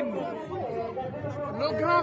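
Chatter of several voices talking over one another, quieter than the loud speech just before and after; no other distinct sound.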